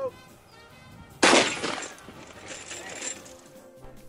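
A single shotgun shot firing a slug, sudden and loud, about a second in, trailing off over about half a second.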